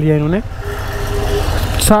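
Yamaha R15 V3 single-cylinder motorcycle engine running at low revs as the bike pulls away, a steady low rumble between stretches of speech.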